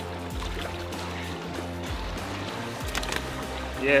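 Background music with a low, sustained bass line that changes note every second or so.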